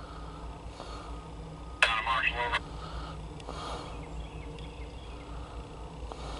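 A short, loud burst of a voice about two seconds in, starting with a sharp click and cutting off abruptly after under a second, over a steady low hum.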